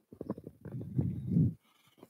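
A man's low, strained vocal sound from the effort of a one-arm row with a weighted jug. A few throaty clicks run together into a hum lasting about a second and a half.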